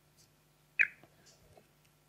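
Laptop keys being pressed to skip through presentation slides: a few faint clicks, and one sharp, louder click a little under a second in.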